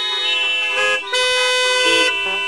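Several car horns honking at once, a loud clash of steady tones at different pitches, in two long blasts with a brief break about a second in.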